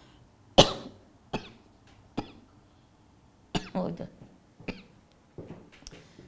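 A woman coughing, a string of about six separate coughs spread through the few seconds, with short pauses between them.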